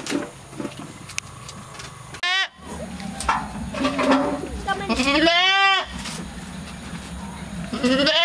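Goats bleating: a short bleat about two seconds in, a longer one rising in pitch about five seconds in, and another long bleat starting near the end.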